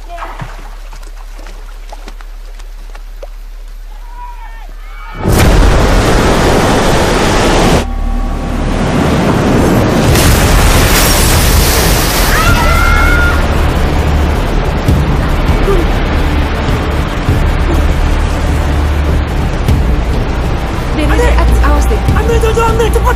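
Film sound of a flood surge: after a few seconds of low hum, a sudden loud rush of floodwater bursts in about five seconds in and keeps going as a continuous torrent, mixed with a dramatic film score.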